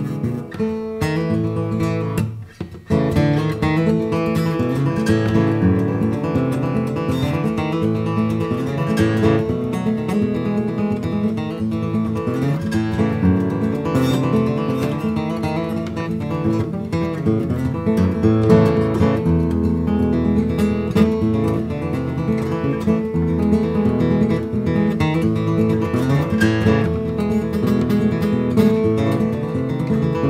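Baritone five-string lojo, a banjo-style five-string instrument built on an acoustic guitar body, fingerpicked with picks in a running melody. There is a brief break in the notes about two and a half seconds in.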